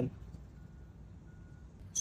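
Two faint electronic beeps of the same high pitch, about half a second apart, over low background noise.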